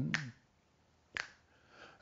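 A sung note trails off, then two sharp finger snaps about a second apart keep time between lines of unaccompanied singing.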